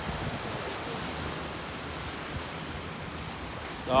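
Ocean surf washing over a rocky shoreline: a steady, even rush of breaking waves.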